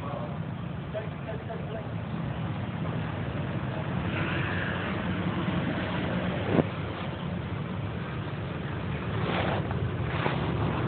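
Steady low background rumble with faint, indistinct voices, and one brief sharp sound about six and a half seconds in.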